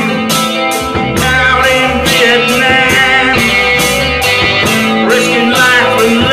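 Live rock band playing: a man singing over guitar and drums, with a steady beat of drum and cymbal hits about twice a second.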